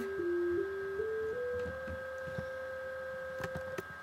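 Pure sine-wave tone from a Max/MSP cycle~ oscillator, played note by note from a MIDI keyboard. It steps up a scale, then holds on C (about 523 Hz) for about two seconds and cuts off just before the end.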